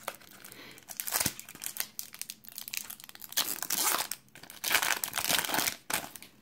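Foil wrapper of a 1996 Pinnacle Select football card pack crinkling and tearing as it is opened by hand, in several short spells of crackle.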